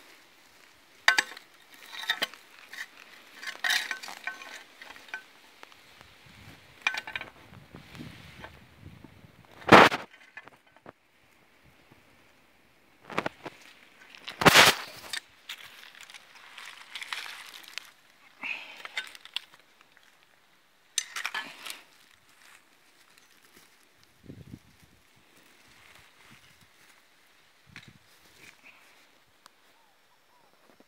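Fishing gear being untied and handled on dry leaf litter and stones: scattered rustles and clicks, with two sharp knocks, the louder about ten seconds in and another about four seconds later.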